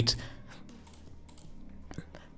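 A few faint, scattered clicks from a computer mouse and keyboard.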